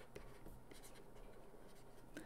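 Faint scratching and tapping of a stylus writing on a tablet screen.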